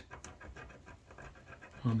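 Faint, irregular scratching of a small metal tool scraping paint off the metal frog tab of a model railroad turnout.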